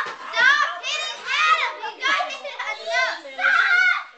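Several children shouting and squealing at play, high voices rising and falling and overlapping with no pause.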